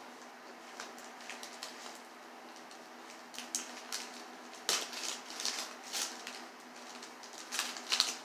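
A paper envelope being opened and its contents handled: quiet, intermittent rustling and crinkling of paper, sparse at first and busier with sharper crackles in the second half.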